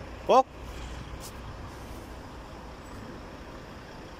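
A man's short rising call, like an 'eh?', about a third of a second in, over a steady low rumble.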